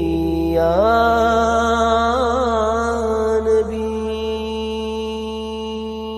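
Male voice singing a naat, with an ornamented line that bends up and down over a steady low drone. From about four seconds in he holds one long steady note.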